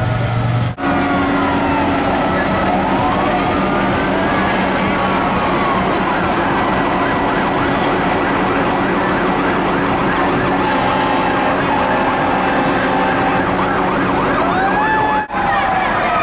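Several sirens wailing at once, their pitches sweeping slowly up and down and crossing each other, over a steady engine hum. The sound breaks off briefly about a second in and again near the end.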